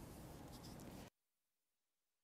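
Near silence: faint studio room tone that cuts off to dead silence about a second in.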